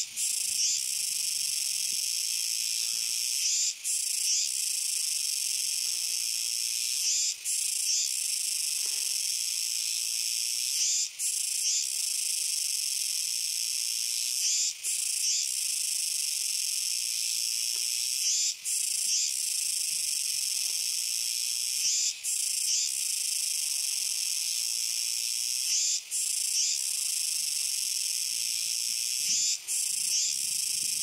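Kuroiwa tsukutsuku cicadas (Meimuna kuroiwae) singing loudly: a continuous high-pitched buzz with a brief break about every three and a half to four seconds.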